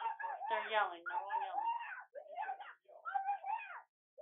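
Voices shouting "Over here!" on a 911 call, heard over a telephone line with its narrow, thin sound.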